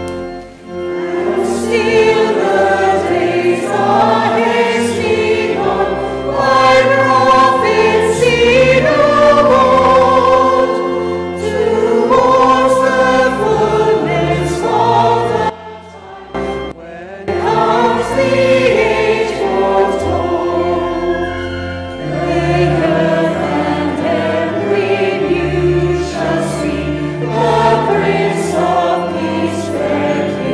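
Small mixed choir of men and women singing a carol, with sustained low notes underneath. The singing breaks off briefly about halfway through, then resumes.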